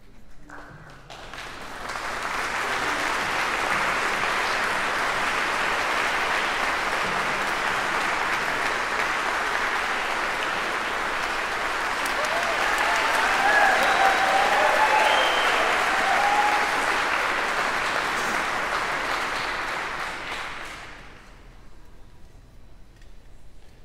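Audience applause in a concert hall, building up over the first two seconds, growing louder near the middle and dying away just before the end.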